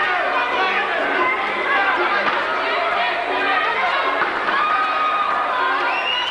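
Crowd chatter from many voices in a large hall, with music playing under it and a held, wavering melodic line about two thirds of the way in.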